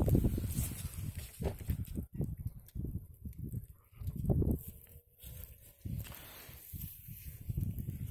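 Irregular footsteps crunching through thin snow over grass, with uneven low thuds and a louder cluster about four seconds in.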